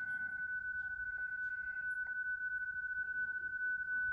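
PSK31 transmit audio from FLDigi, heard through the Icom IC-705's monitor while a CQ call is sent: one steady high tone at about 1.5 kHz.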